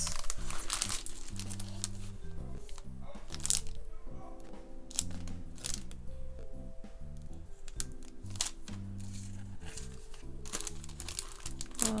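Clear plastic card sleeves crinkling in short rustles, several times, as swap cards are handled and laid on the mat, over soft background music.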